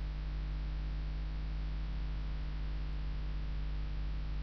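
Steady low electrical mains hum with a faint hiss underneath, unchanging throughout.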